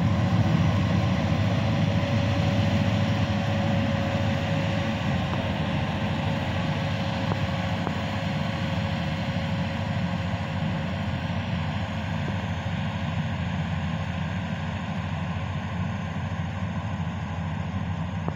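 Bangla Mark full-feed combine harvester running steadily as it cuts rice, a continuous engine and machinery drone with a faint whine through the first half, gradually growing fainter.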